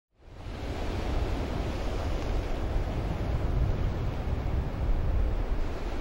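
Ocean surf breaking along a rocky shore, a steady wash of noise, with onshore wind rumbling on the microphone. It fades in over the first half second.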